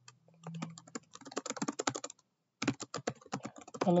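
Typing on a computer keyboard: a fast, irregular run of keystrokes with a brief pause a little over two seconds in.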